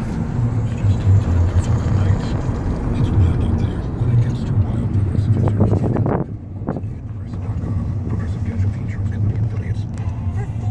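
Steady low rumble of a moving car's engine and road noise, heard from inside the cabin, easing slightly about six seconds in.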